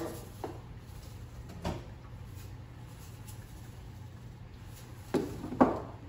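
A few light knocks and clicks from seasoning containers being handled and shaken over a cooking pot, spaced several seconds apart, over a low steady hum.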